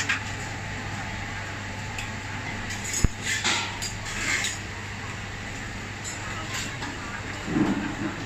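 Busy noodle-shop dining-room ambience: a steady hum of electric fans under indistinct diners' chatter, with dishes and utensils clinking now and then and one sharp clink about three seconds in.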